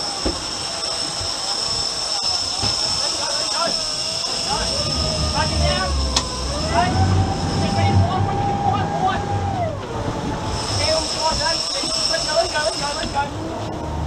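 Honda outboard engines driving the boat while it follows a hooked marlin. The engines are throttled up about halfway through, held, then eased back near the end, over water wash and a steady high whine.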